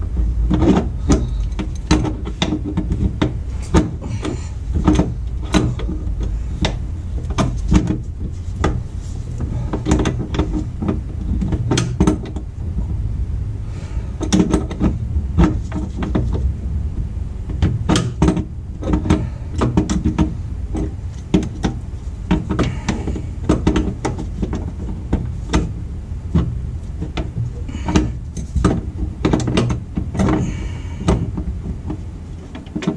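Wrench clicking and clinking on a nut and metal bracket as the nut is tightened, in irregular clicks a few a second, over a steady low rumble.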